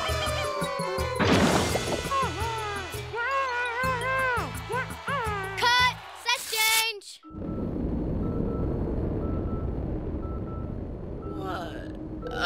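Cartoon soundtrack music with a steady bass beat, a long falling whistle-like glide, a crash about a second in, and squeaky, wordless vocalizing. About seven seconds in it cuts to a steady hiss with a short high beep repeating about twice a second.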